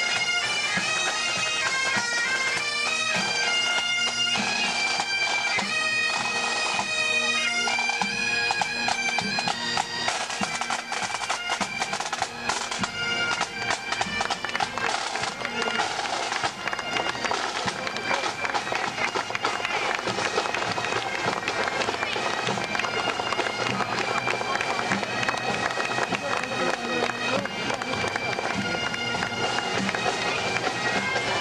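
Pipe band of bagpipes and drums playing a march, the pipe melody over its steady drone clear for the first ten seconds. After that it grows fainter under crowd voices and clatter.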